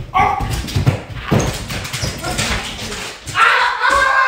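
A dog yelping and whining, with scuffling between the cries and a longer run of high whines near the end.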